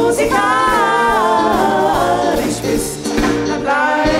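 A group of male singers performing a song into microphones, backed by a live band with drum kit and a steady beat.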